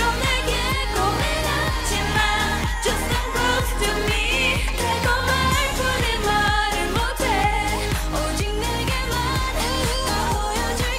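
K-pop dance-pop song: female voices singing Korean lyrics over a steady electronic beat.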